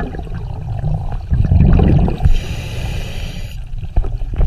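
Scuba diver breathing through a regulator underwater: a low gurgle of exhaled bubbles, then a steady hiss of air drawn through the demand valve for about a second past the halfway mark, cut off sharply.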